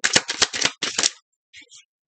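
A deck of tarot cards being shuffled by hand: a quick run of card clicks and slaps lasting about a second, then a couple of faint ones.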